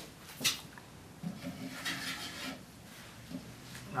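A sharp wooden knock about half a second in, then soft wood-on-wood rubbing and scraping as a wooden spindle is pushed and twisted into a freshly reamed tapered hole in a Windsor chair's arm rail.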